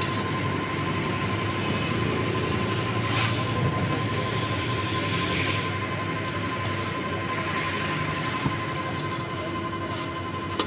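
Motor-driven stirring kettle churning roasting peanuts: a steady machine rumble with a constant whine, and the rattle of nuts moving against the pan. Brief swells of higher hiss come about three and five seconds in.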